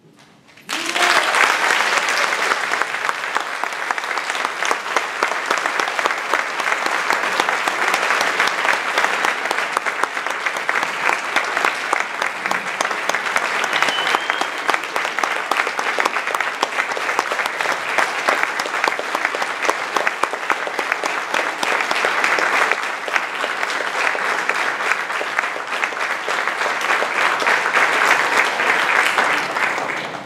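Audience applause starting suddenly about half a second in, right after a concert band's final chord has died away, then continuing steadily and densely.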